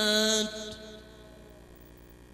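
A man's amplified Quran recitation, the end of a phrase held on one long note that stops about half a second in. A short echo and faint hum follow.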